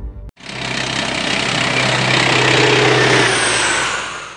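A loud, rushing engine noise over a steady low hum. It starts abruptly after a brief silence, swells over the first three seconds and fades away near the end.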